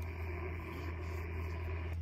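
Icom IC-705 HF transceiver's speaker giving steady band-limited static hiss between transmissions, the open receiver noise after the other station has unkeyed. A steady low rumble runs underneath.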